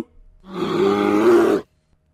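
A bear growl: one rough growl lasting about a second.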